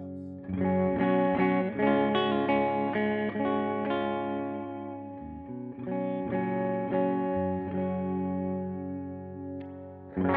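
Epiphone ES Les Paul Pro semi-hollow electric guitar with ProBucker humbuckers played through an amp with a clean tone: a run of chords, a short break about five seconds in, then a chord left ringing and fading away.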